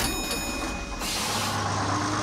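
Cartoon bus sound effect: a hiss that cuts off sharply about a second in, then the bus engine running with a low hum and a slowly rising tone as the bus pulls away.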